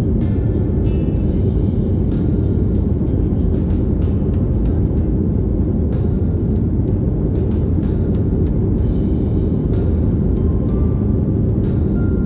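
Steady loud rumble of an airliner's engines and airflow heard inside the cabin in flight, with faint short high tones coming and going above it.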